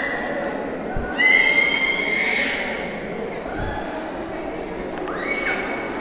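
A long high-pitched squealing call starts about a second in and is the loudest sound; a shorter one follows near the end. Both sit over a steady murmur of people talking in the stone cave hall.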